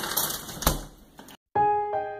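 Clicking, rustling noise with one sharp click fades out over the first second; after a brief silence, soft background piano music with held notes starts about a second and a half in.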